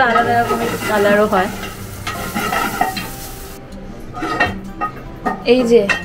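Diced bell peppers frying in oil in a pan, sizzling while being stirred with a wooden spatula; the sizzle cuts off suddenly about three and a half seconds in. Voices talk briefly over it near the start and near the end.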